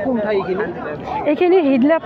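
A woman speaking, with other people's voices chattering behind her.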